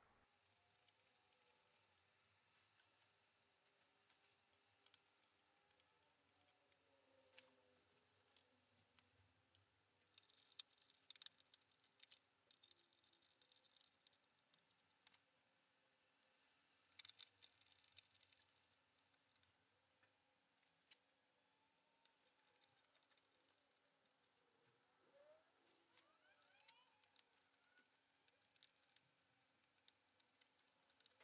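Near silence: room tone with faint, scattered clicks and taps of hands handling small parts and wiring on a motorcycle, a few tighter clusters of ticks and one sharper click about two-thirds of the way through.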